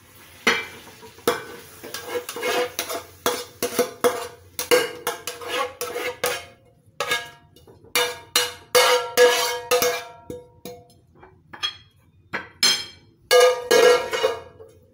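A metal spatula scraping and knocking against a frying pan as stir-fried pork and scallions are scraped out onto a plate, in many irregular strokes. The pan rings briefly after some of the strikes.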